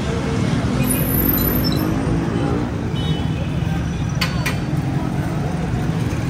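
Busy street traffic with a steady engine rumble and background voices, and a couple of sharp clicks about four seconds in.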